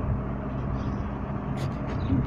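Steady low background rumble and hum, with a few short clicks near the end.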